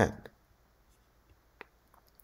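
A man's voice finishes a word at the start, then near quiet with two faint clicks of a stylus tapping a writing tablet, one just after the word and one near the end.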